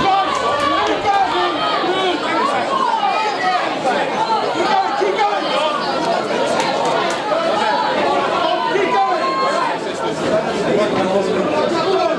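Ringside boxing crowd talking and shouting over one another, many voices at once with no let-up.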